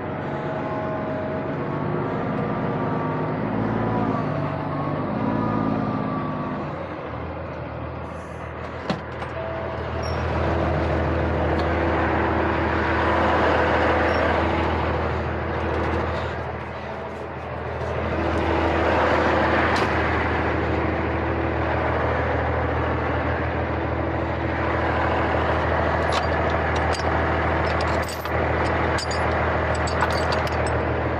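Kenworth C500 truck's diesel engine running, swelling louder twice as it is given throttle, with a few sharp clicks and knocks near the end.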